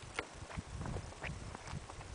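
Faint, irregular clicks and scuffs of footsteps on bare rock, about two or three a second.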